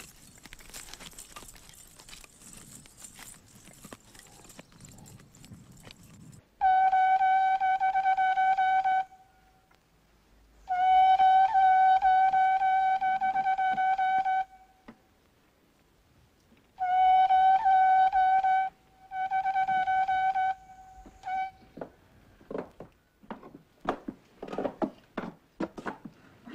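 A child blowing a large curved animal horn: four long, steady blasts, all on the same pitch, with short gaps between them, the second blast the longest. A few light knocks follow near the end.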